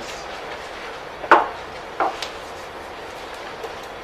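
Knocks on the panel table over steady room noise: one sharp knock about a second and a half in, then two lighter ones close together.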